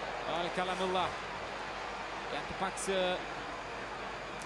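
A man's voice speaking faintly in short phrases over the steady crowd noise of a football match broadcast.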